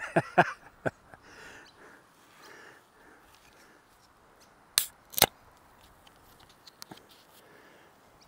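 Two sharp clicks about half a second apart from the camera being handled close up, over faint outdoor background.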